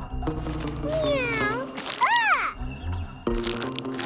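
A cartoon cat's voiced meows over background music: a gliding call about a second in, then a higher, arched meow about two seconds in. A scratchy noise follows near the end.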